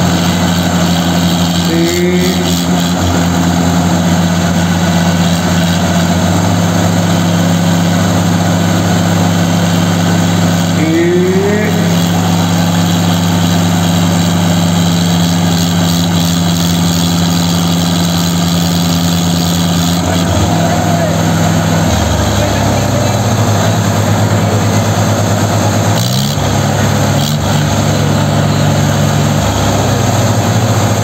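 Mahindra 575 and New Holland 3630 diesel tractor engines running hard under load in a tractor tug-of-war. Their note holds steady, drops about twenty seconds in, and climbs again a few seconds later.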